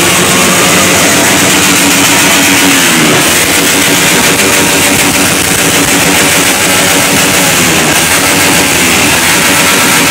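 A large convoy of motorcycles and scooters passing close by, many small engines running and revving at once. Their overlapping engine notes keep rising and falling in a loud, unbroken din.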